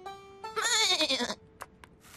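A cartoon sheep's bleat, wavering and falling in pitch, starting about half a second in and lasting under a second, over a held note of background music. Two small clicks near the end.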